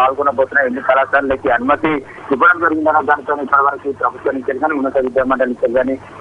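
Speech only: a reporter talking in Telugu over a telephone line, the voice thin with its top end cut off.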